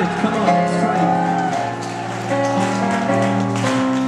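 Live synthesizer-based darkwave music: layered sustained synth chords over a steady low bass tone, with no lead vocal.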